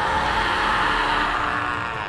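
Anime power-up sound effect: a sustained rushing surge of dark energy, a dense steady roar that eases off near the end.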